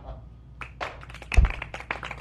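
A few short taps and one heavier thump about one and a half seconds in, like hands striking a desk.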